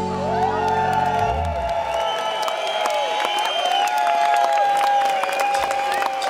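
A rock band's final chord rings out and cuts off about two seconds in. The concert crowd then cheers, whoops and applauds.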